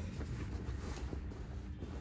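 Faint rustling of a military shirt's fabric as it is handled and turned over, with a steady low hum underneath.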